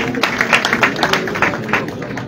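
Hand clapping from a group of people: quick, uneven, sharp claps, several a second.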